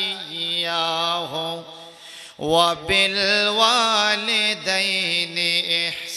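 A man chanting a Quranic verse in Arabic in a melodic, drawn-out style, with long held notes that bend in pitch. He breaks off briefly about two seconds in, then carries on.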